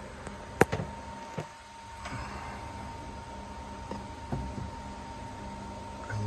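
A sharp click a little over half a second in, then a few softer knocks, over a faint steady hum.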